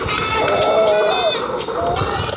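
Cartoon soundtrack: a wavering, voice-like sound effect lasting about a second, over background music.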